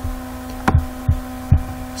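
Steady electrical hum on the recording, with three short, soft low thumps about half a second apart in the middle.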